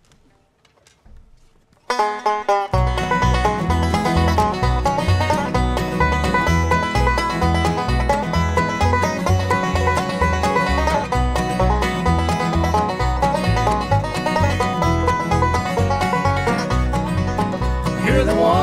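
A bluegrass band starts an instrumental intro about two seconds in: banjo picking the lead over acoustic guitar, mandolin and upright bass. The bass comes in a moment later with a steady beat.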